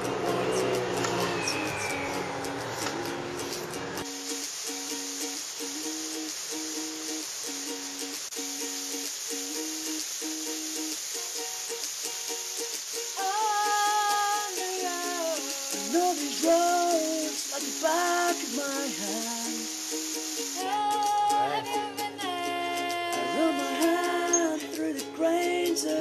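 Ukulele music: a repeating plucked pattern, with a melody line coming in about halfway through.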